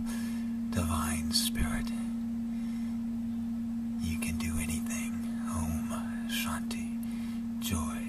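A steady, single-pitched drone tone held without change, with a man whispering softly in short phrases over it several times.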